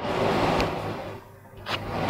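Cloth rustling close to the microphone as a headscarf is adjusted by hand. It fades out after about a second and is followed by a short click.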